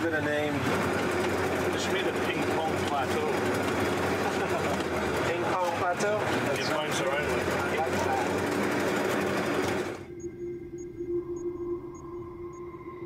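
Steady engine and road noise inside a moving off-road expedition truck's cab, with the crew talking over it. About ten seconds in it cuts off suddenly to quiet electronic tones with faint, evenly spaced high pings.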